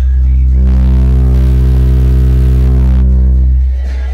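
A very loud, steady low bass tone from two Xion X4-series subwoofers in a ported box, played as an SPL test. Buzzy overtones join about half a second in, and the tone eases slightly near the end.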